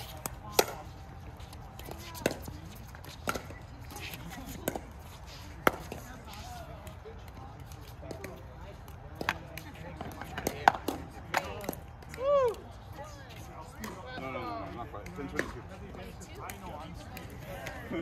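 Pickleball paddles striking the hard plastic ball: sharp single pops, irregularly spaced, a second or two apart, some loud and some fainter. Faint voices talk near the end.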